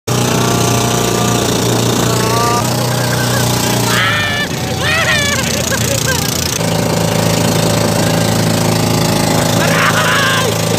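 Outrigger pump boat engine running hard at speed, a loud steady pulsing drone that changes pitch a few times. Voices shout over it for a couple of seconds in the middle and again near the end.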